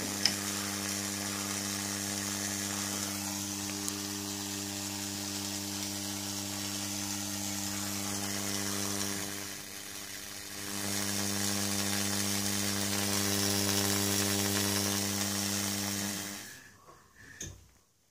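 Slayer-exciter Tesla coil running, its small spark discharge giving a steady buzz and hiss. It drops briefly about ten seconds in, comes back, then cuts off near the end as the coil is switched off.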